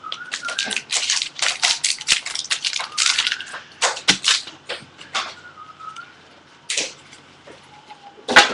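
Trading cards being flipped through by hand and set down onto stacks on a glass tabletop: a quick, irregular run of sharp clicks and slaps that thins out after about five seconds.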